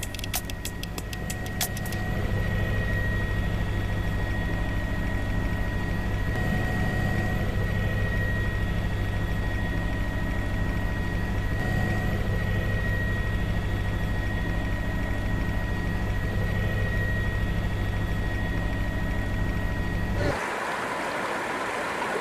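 Steady hum of a camera drone's rotors with a thin high whine, a quick run of clicks in the first two seconds. About twenty seconds in, the hum gives way to a rushing hiss of wind and water.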